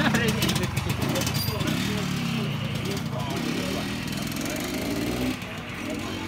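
Two-stroke Yamaha motorcycle pulling away hard, its engine revving up with rising pitch through the gears and growing fainter as it rides off, dropping away a little before the end.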